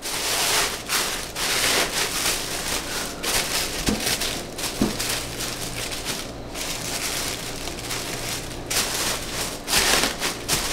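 Tissue paper rustling and crinkling as it is smoothed flat by hand and tucked into a cardboard shipping box, with a short lull a little past the middle.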